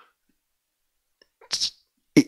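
Near silence, then about a second and a half in a short, sharp burst of breath into a handheld microphone, in two quick pulses, such as a huff or a sneeze.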